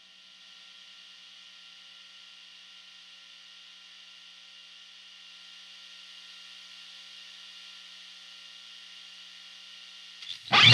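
Steady electrical hum and hiss from a guitar amplifier fed through a Dad Tech Tube Smasher pedal, with no strings played. The noise grows slightly louder about half a second in and again midway as the pedal's knobs are turned up.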